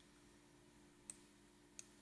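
Near silence broken by two faint computer mouse clicks, about a second in and again just before the end.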